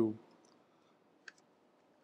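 The tail of a spoken word fading out, then a single short, faint click a little over a second later.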